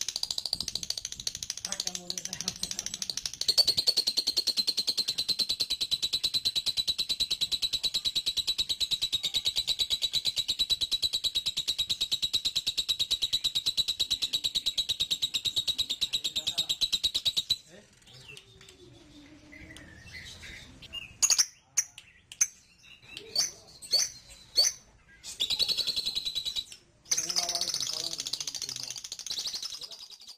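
Birds calling: a long, rapid, high-pitched trill that holds steady for about fourteen seconds, then a run of short, sharp chirps, and more high trilling near the end.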